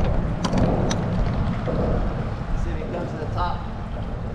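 Boat's outboard motor running under way, a steady low rumble mixed with wind buffeting the microphone, with a couple of sharp clicks about half a second and one second in.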